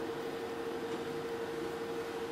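Room tone in a pause between speech: a steady hiss with a constant faint hum.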